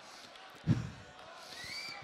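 Faint murmur of a seated audience in a hall, with a single dull thump about a second in and a short rising whistle-like tone near the end.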